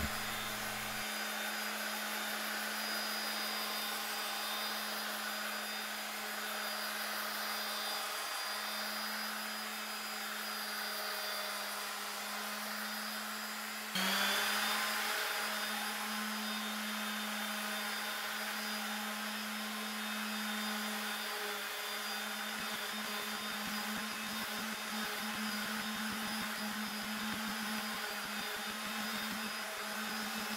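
Electric random orbit sander running steadily with a constant hum as its pad works wood sandpaper over a rusty cast iron table saw top. The loudness jumps briefly about halfway through.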